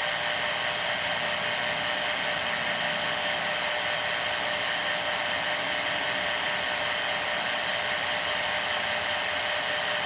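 Steady static hiss from a handheld 40-channel CB transceiver's speaker, with a faint steady tone running through it.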